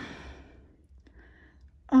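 A woman's breathy sigh, an exhale that fades away within about a second, followed by a quiet pause before her voice returns near the end.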